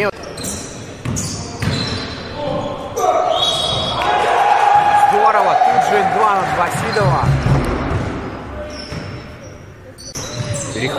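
Live court sound of an indoor basketball game: a basketball bouncing on the hardwood floor, with players' voices in the hall and short squeaks now and then. The sound is busiest in the middle and dies down toward the end.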